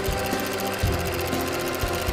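ROKR Vitascope basswood projector model being hand-cranked: its wooden gears and small hand generator motor run with a rapid, even clatter. Background music plays underneath.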